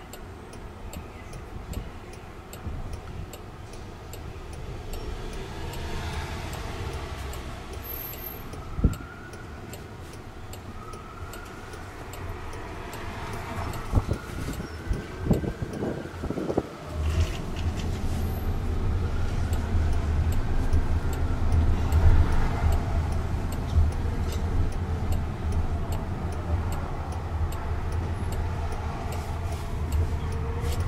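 Cabin noise of a Jaguar I-PACE electric robotaxi driving in city traffic: road and tyre rumble that grows louder about halfway through as the car picks up speed. A distant siren can be heard faintly wailing up and down, along with a few knocks and a faint steady ticking.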